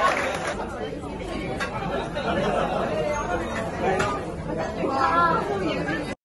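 Several people talking at once, a jumble of overlapping voices with no single speaker standing out. Clapping trails off in the first half-second.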